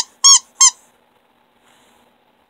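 Squishy ham-shaped dog toy being squeezed, giving short, bright squeaks in quick succession in the first second, each rising and falling in pitch; squeaked to bring the dog running.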